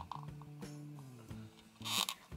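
Quiet background music of held, sustained tones, with a few faint clicks from a small hard-plastic toy compact being turned over in the hands.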